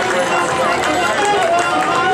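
Marching band playing on the field, with spectators talking close by over the music.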